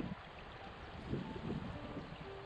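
Shallow river running over stones, a steady rushing hiss, with wind gusting on the microphone in irregular low rumbles. A few faint, held music notes start to come in during the second half.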